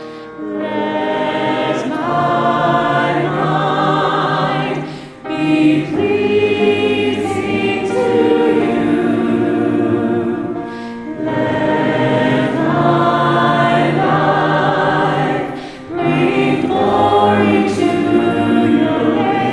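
Mixed choir of men's and women's voices singing a worship song in long held phrases, with brief breaks between phrases about five seconds apart.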